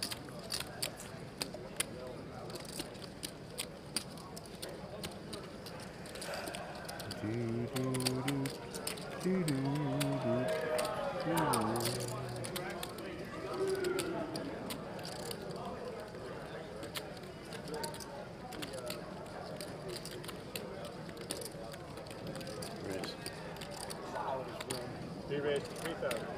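Poker chips clicking again and again as players handle and shuffle their stacks at the table, over a low murmur of voices in the room. A man's voice talks for a few seconds near the middle.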